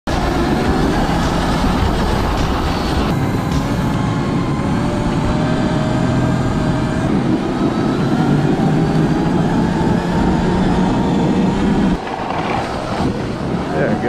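Sur Ron electric bike with a Track N Go snow track kit running over snow: a steady rumbling clatter from the track with a faint motor whine that rises in pitch, easing off about two seconds before the end.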